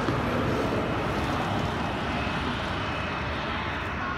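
Boeing 737-800's CFM56 turbofan engines running steadily with a continuous rumble and hiss as the airliner rolls out slowly on the runway after landing.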